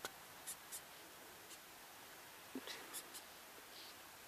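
Faint, scattered short scratchy ticks, about seven in four seconds, as a longhorn beetle is handled on a bare palm.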